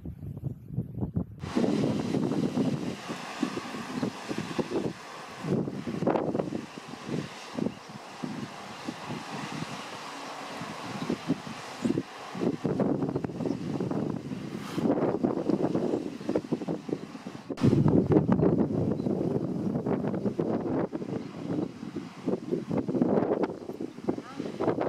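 Wind buffeting the microphone over surf breaking on rocks, in uneven gusts. The noise jumps abruptly about a second and a half in, and again about three-quarters of the way through, where it gets louder.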